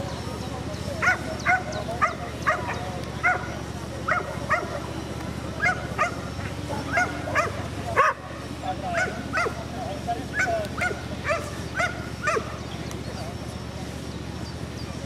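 A dog giving a long run of short, sharp yipping barks, about two a second, starting about a second in and stopping shortly before the end.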